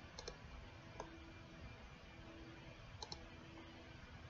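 Faint computer mouse clicks in near silence: a quick double click about a quarter second in, a single click at about one second, and another double click about three seconds in.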